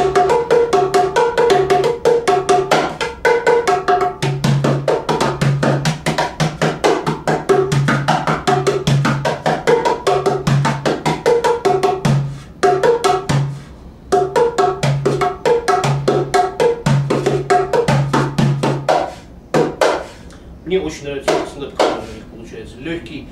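Two Cajudoo drums, ceramic udu-style clay pots with a membrane top and a side hole, played together with bare hands in a fast rhythm. Deep bass tones alternate with higher ringing strokes, and the two drums' pitches form a pleasant musical interval. The playing breaks off briefly about halfway through and again near the end.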